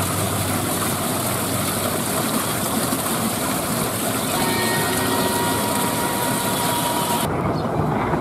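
Water pouring and splashing steadily into the basin of a garden fountain built from an old truck, a constant hiss. It cuts off suddenly about seven seconds in, leaving a quieter, duller background.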